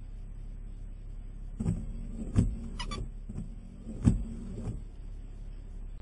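Several loud knocks and thuds close to the microphone over a steady low hum, with a quick run of small rattling clicks in the middle.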